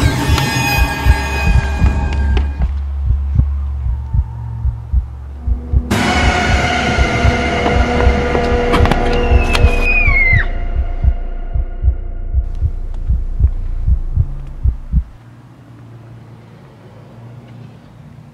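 Horror film score: a low, repeated pulse under sustained droning tones that swell about six seconds in, with a short falling high tone near the middle. It cuts off suddenly about fifteen seconds in, leaving only a faint low hum.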